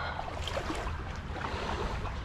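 Shallow river water sloshing as someone wades through it, over a steady low wind rumble on the microphone.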